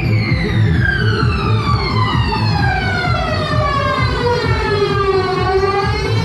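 Dance music with a long siren-like synth sweep that falls slowly in pitch for about five seconds and then starts to rise again near the end, over a steady bass beat.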